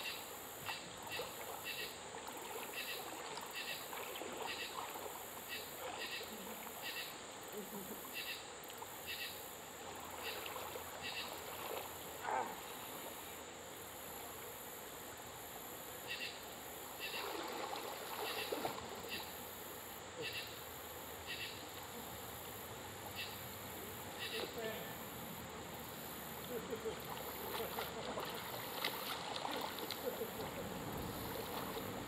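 Creek water splashing and sloshing as a person wades in and swims, with short irregular splashes, over a steady high-pitched insect drone from the surrounding trees.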